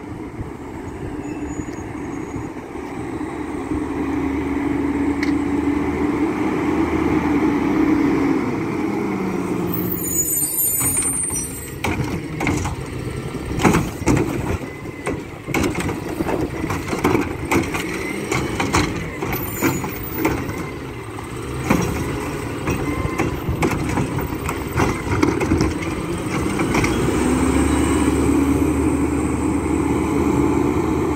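Mack LEU garbage truck's natural-gas engine running as it pulls up, with a hiss of the air brakes about ten seconds in. Then a run of clatters and bangs as the Heil Curotto-Can arm lifts and dumps a cart, and the engine revs up again near the end.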